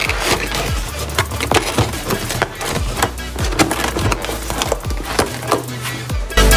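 Cardboard cake box being closed and handled: a dense run of irregular crackles and clicks, over background music with a steady low bass.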